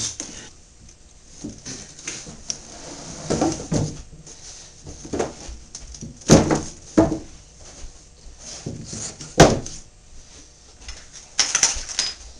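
Wooden shadow box being lifted, tilted and set down on a workbench: a series of knocks and clunks of wood on the bench, the two loudest about six and nine seconds in.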